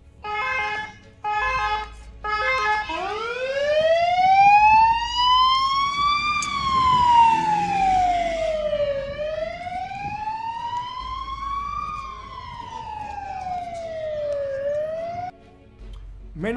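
Ambulance siren: three short blasts at one steady pitch, then a slow wail that rises and falls twice and cuts off near the end.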